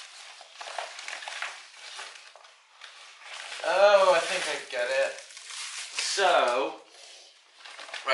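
Rustling and crinkling of a black fabric softbox as it is handled and unfolded, with two short wordless vocal sounds from a man, about halfway through and again a couple of seconds later.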